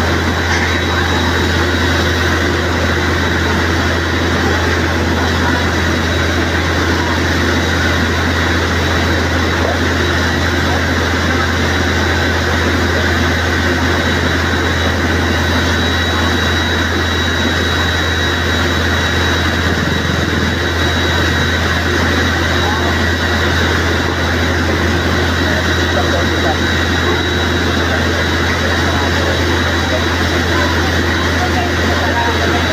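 Fire truck's engine running its water pump, a loud steady drone with no change throughout, mixed with the voices of a crowd.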